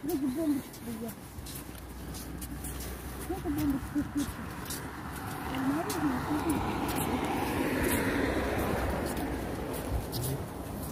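A car driving past on the road, its engine and tyre noise building to a peak about eight seconds in and then easing off, with faint voices under it.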